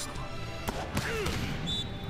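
Anime soundtrack music playing under the reaction, with a single short knock about a third of the way in and a faint voice fragment just after it.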